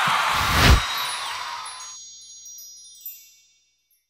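Closing sound effect: a loud rushing whoosh with two low thuds, cut off sharply about two seconds in. A shower of high, sparkling chime tones follows and fades away.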